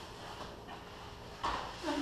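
Two grapplers shifting their bodies on a foam mat, with a sudden thump and scuffle about one and a half seconds in, followed by a brief grunt near the end.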